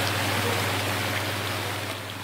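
Steady running water from a large aquarium holding tank's circulation, an even rushing noise with a constant low hum underneath.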